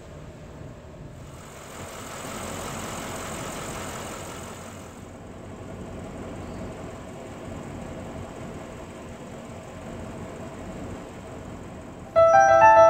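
Audi RS 7 Performance's twin-turbo V8 idling steadily, with a broad hiss that swells for a few seconds about a second in.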